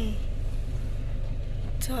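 Car engine and road rumble heard from inside the cabin as the car rolls slowly: a low, steady drone. A voice comes in near the end.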